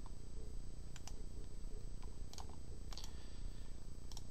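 A few light computer mouse clicks, coming in close pairs, over a faint steady low hum.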